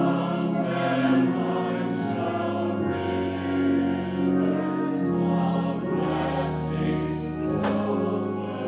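Mixed church choir singing an anthem in sustained, full chords.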